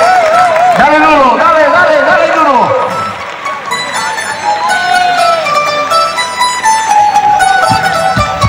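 A crowd shouting and cheering. About three seconds in, a bandurria starts playing a melody alone, its plucked steel-string notes ringing clear. A few low thumps come in near the end.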